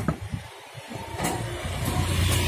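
A motor running with a steady low hum that grows louder about a second in, with a faint steady tone above it and a few light clicks.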